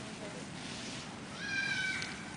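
A brief high-pitched cry near the end, about half a second long, rising at its start and then held steady, over a low background murmur.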